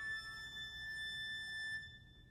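Viola holding a single high note alone, steady and clear, which stops near the end.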